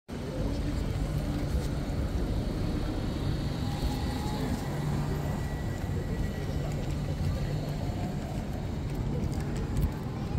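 Steady low rumble of city traffic, with voices of passers-by in the background.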